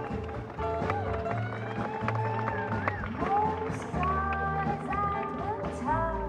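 Live band playing an instrumental passage: a lap steel guitar with notes gliding up and down in pitch, over upright double bass, snare drum and strummed acoustic guitar.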